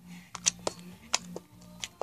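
Fingers poking blue slime, giving a few small sharp clicking pops, about five across two seconds.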